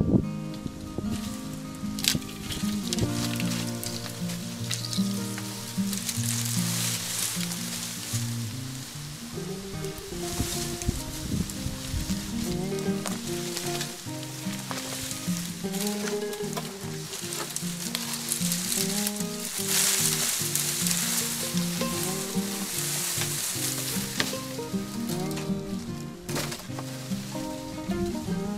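Dry bamboo canes and dead leaves rustling and crackling as they are handled and gathered, with occasional sharp snaps. Background music with a melody of held notes plays underneath.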